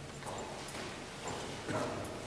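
A group of people sitting down on chairs on a hard floor: a scatter of irregular knocks, chair scrapes and shuffling, with paper rustling.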